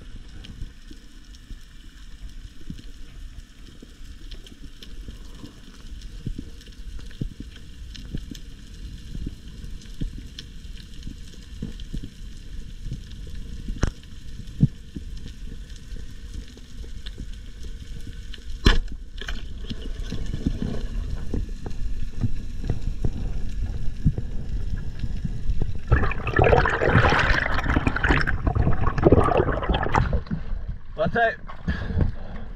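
Underwater sound on a reef: a steady muffled low rumble with scattered clicks and crackles, and one sharp knock a little past halfway. Over the last few seconds a loud rush of water and bubbles takes over.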